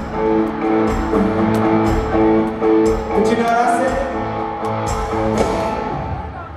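Live band playing amplified through an arena PA: held electric guitar chords over drums with repeated cymbal hits, with some singing. The music dies away near the end.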